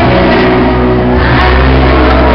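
Loud live band music with a strummed acoustic guitar over a steady bass, and a woman singing.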